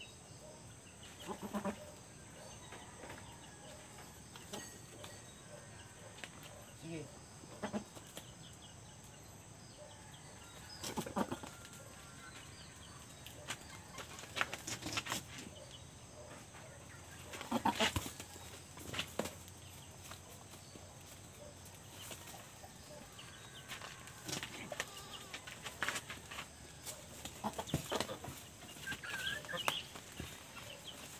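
Goats bleating now and then, with scattered scuffles and knocks, as a buck goat is brought to mount a doe in heat.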